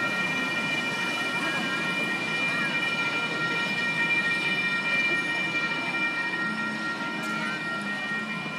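Railroad crossing signal bell ringing steadily at a lowered crossing gate, its tone held at several fixed pitches, while a small passenger train rolls past over the rails.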